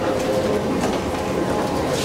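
Escalator running: a steady mechanical hum with a constant tone, heard close to the moving steps.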